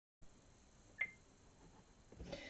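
Near silence: faint room hiss, with a single short click about a second in.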